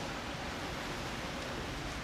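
Steady, even hiss with a faint low hum under it, unchanging throughout.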